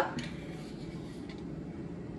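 Faint scooping and scraping of a spoon in a plastic tub of thick plain yogurt, over a steady low room hum.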